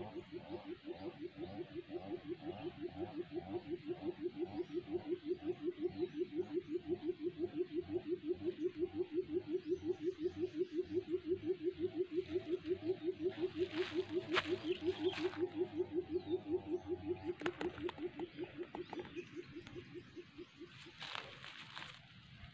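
A buttonquail's low booming call: one long, even run of fast low hoots that swells in loudness, then fades and stops near the end. A few sharp rustles and clicks from the bird and snare being handled come partway through.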